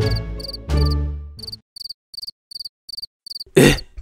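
Crickets chirping in short, evenly spaced high pulses, about three a second, as night ambience. A low steady tone with deep bass holds over the first second and a half.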